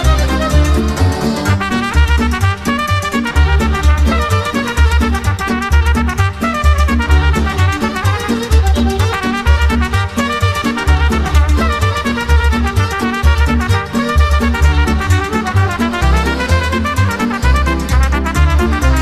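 Instrumental Moldovan folk dance music: a fast, ornamented lead melody over a steady, evenly pulsing bass beat.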